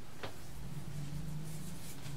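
Faint rubbing of fingers on skin as essential oil is worked onto a wrist and hand, over a steady low hum.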